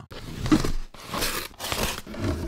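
Cardboard box being opened: two long tearing strokes through the packing tape and cardboard.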